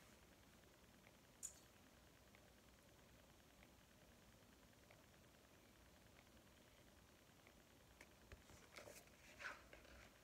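Near silence: room tone, with one short click about a second and a half in and a few faint rustles and taps near the end.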